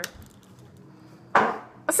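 Fingers flicking the plastic arrow of a board-game spinner on a cardboard card on a tabletop, giving a sharp click at the start and another just before the end. A short, loud rush of noise comes about a second and a half in.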